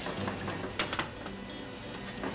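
Seafood hot pot simmering in a pan on a gas burner, with a couple of light clicks about a second in as raw prawns are dropped into the sauce.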